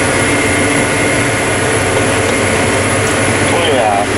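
Tractor engine running steadily under tillage load at about 2,000 rpm, heard from inside the cab as an even drone with a faint, steady high tone. A brief voice sounds near the end.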